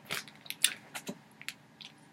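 About seven faint, short clicks and crackles, irregularly spaced.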